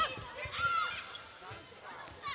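Indoor volleyball rally: the ball struck a few times and shoes squeaking on the court over crowd noise and faint voices.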